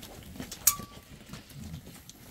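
Faint shuffling and handling noise from a sheep held still for measuring against a steel tape measure, with one sharp click and a short ring about two-thirds of a second in.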